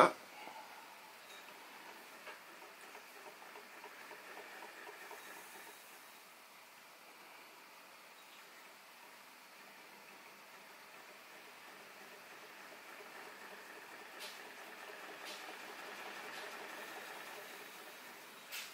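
Olds & Sons Huxtable hot air (Stirling) engine running freely, just started: a faint, even mechanical patter from its piston, displacer and crank, swelling a little near the end with a couple of light clicks.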